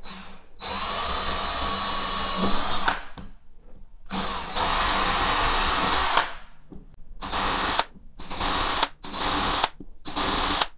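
DeWalt cordless drill with a 3 mm bit boring a row of small holes through a pine floorboard: two runs of about two seconds each, then three short bursts near the end.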